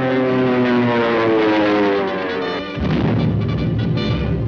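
Orchestral cartoon score playing a long, steadily descending phrase, cut off almost three seconds in by a sudden low rumbling crash sound effect.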